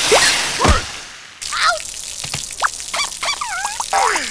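Cartoon water-spray effects: jets of water hissing and squirting out in bursts, with the cartoon bugs' high squealing cries and yelps between them. The hiss drops away for a moment about a second in, then returns.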